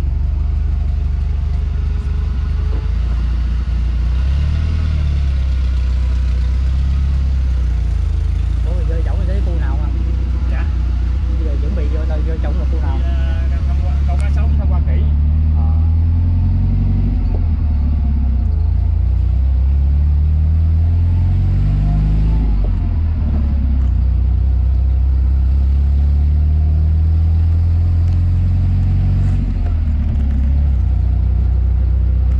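Steady low rumble of a vehicle ride, heard from inside the cab of a park shuttle on a dirt track, with people talking over it in the first half.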